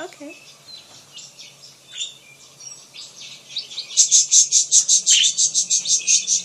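Budgies (budgerigars) chirping and chattering, with scattered chirps at first, then a loud, fast run of repeated chirps, about eight a second, from about four seconds in.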